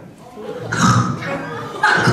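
Short bursts of voice through a handheld microphone and PA in a large hall, most likely a child answering into the mic. They start after a brief pause at the beginning.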